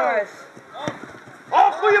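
A football kicked once, a single sharp thud about a second in, with a man shouting from the sideline just before and after.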